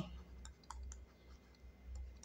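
A few faint, sharp clicks, about a second apart, over a low steady hum.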